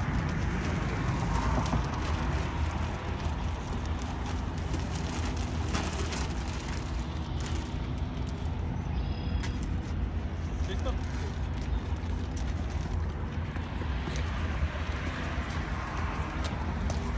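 Steady outdoor background noise with a heavy low rumble and a few faint scattered clicks.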